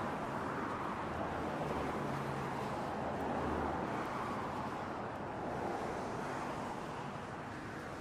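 Road traffic on the adjacent bridge lanes: a steady hiss of passing cars' tyres, with a lower engine rumble from a passing vehicle between about two and four seconds in.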